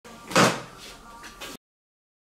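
A loud knock about half a second in, then two softer knocks, before the sound cuts off suddenly.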